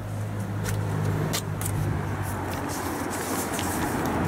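A car engine idling: a steady low hum that grows a little louder, with a few light clicks over it.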